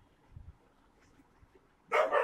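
Mostly quiet, then a dog lets out a loud, short bark just before the end.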